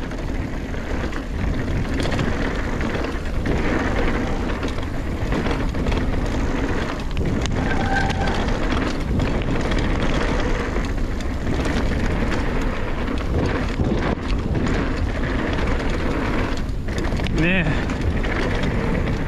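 Mountain bike rolling fast down a dirt trail: a steady rush of wind on the microphone mixed with tyre and trail noise, without a break.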